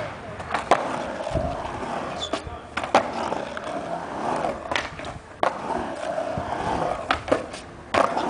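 Skateboard wheels rolling on a concrete mini ramp, with about five sharp clacks of the board hitting the ramp spread through.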